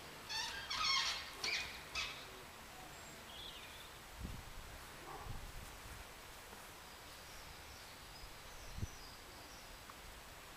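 Quiet outdoor garden ambience with a burst of short bird calls in the first two seconds and faint high chirps later, broken by a few soft low thumps.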